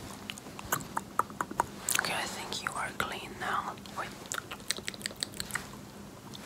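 Close-up wet mouth sounds: rapid tongue and lip clicks and smacks, with a short stretch of whispering about two seconds in.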